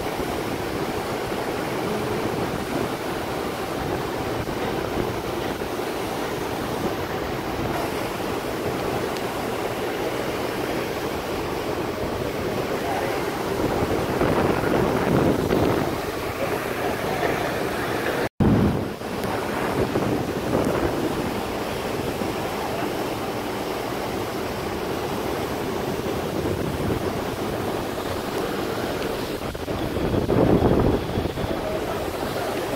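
Steady rush of fast-flowing river water at a dam, with wind buffeting the microphone and swelling louder now and then. The sound cuts out for an instant about 18 seconds in.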